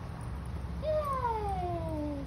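A puppy gives one long whine that starts about a second in and slides steadily down in pitch for more than a second, while it waits for a treat.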